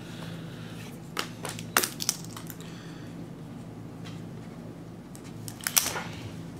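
Light handling noises on a tabletop: a few short clicks and taps, a cluster in the first couple of seconds and two more near the end, over a steady low hum.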